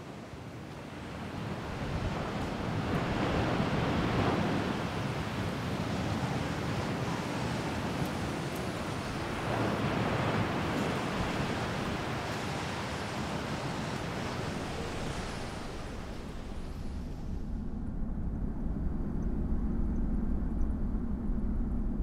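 Rushing noise of wind and sea, swelling and easing in slow waves. About seventeen seconds in it gives way to a lower, steady rumble.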